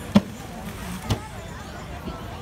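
Two short, sharp knocks about a second apart, the first louder, over background voices and chatter.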